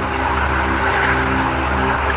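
A steady low hum with several held tones above it, heard through a played-back phone voice note.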